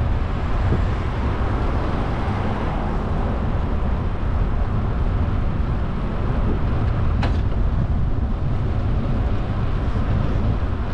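Steady wind and road noise from a bicycle riding along a city street, rumbling heavily in the low end on the camera's microphone. A short click sounds about seven seconds in.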